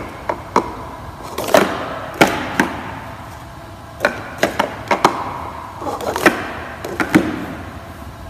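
Hard plastic speed-stacking cups clacking against each other and the wooden gym floor as a six-cup pyramid is stacked up and then down stacked, twice over. The clacks come singly and in quick clusters, each with a short hollow ring.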